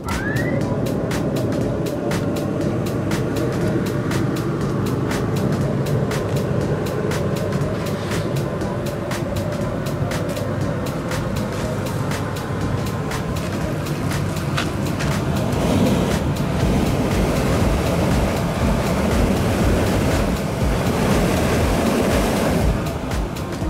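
Dalton MA440 dust collector's blower motor finishing a rising whine as it comes up to speed, then running steadily with a steady hum of air drawn in at the intake.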